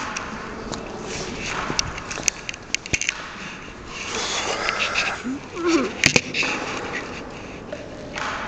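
Handling noise of a handheld camera being carried across a gym and set down: rustling and scuffing with scattered sharp clicks, the loudest a pair of knocks about six seconds in as it comes to rest.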